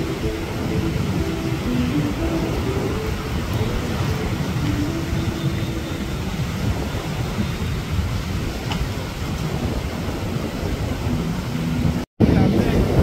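Surf breaking on a sand beach, heard as a steady low rumbling wash, with wind buffeting the microphone.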